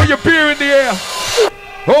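An MC's voice calling out in long, pitch-bending shouts over a drum and bass mix, as the bass line drops out at the start. There is a short lull about three quarters through, then an 'oh yeah' right at the end.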